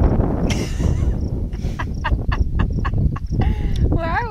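Wind buffeting the microphone throughout, with a woman's laughter in a quick run of short bursts about two seconds in.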